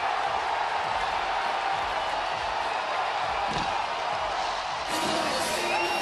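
Large ballpark crowd cheering steadily for a walk-off home run that has just won the game.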